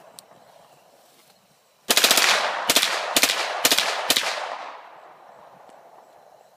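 G9 firearm firing on full auto: about two seconds in, a rapid burst of shots, then four short bursts about half a second apart. The echo dies away after the last burst.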